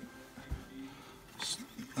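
Faint handling sounds of coins in plastic capsules and a slabbed coin being moved on a tabletop: a soft knock about half a second in and a light clink near the end, over faint background music.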